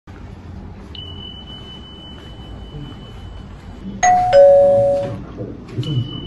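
An electronic two-tone ding-dong chime about four seconds in: a higher note and then a lower one, ringing for about a second before fading. A faint thin high whine sits under it earlier on.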